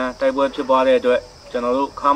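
A man speaking Burmese in a steady, level voice, over a constant high chirring of insects.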